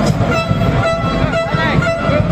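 Supporters' horns tooting in held tones that come and go, some bending up and down in pitch, over fast drumming and crowd voices in the stands.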